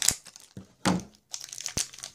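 Thin plastic wrapper crinkling as it is cut with scissors and pulled open, in a few short bursts, with a sharp click near the end.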